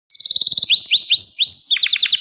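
Gloster canary singing: a fast high trill, then a run of rising whistled notes, and a new rapid trill starting near the end.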